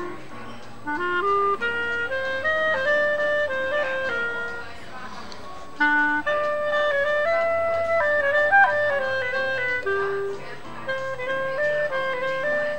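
Solo clarinet playing a melody of quick, separate notes that move up and down, with a short pause about five seconds in before the line picks up again.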